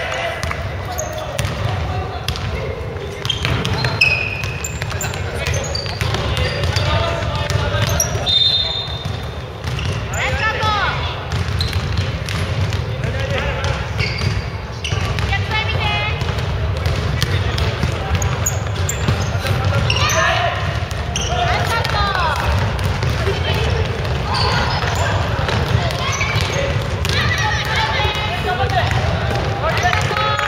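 Basketball bouncing on a wooden gym floor during play, with players' voices calling out in a large echoing hall.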